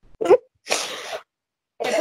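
A person's short voiced catch, rising in pitch, followed by a half-second breathy burst, like a sharp exhale or sneeze-like puff of breath.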